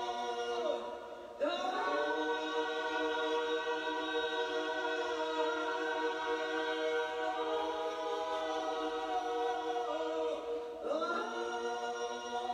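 Choir singing a cappella in long sustained chords, with a short break between phrases about a second in and again near the end.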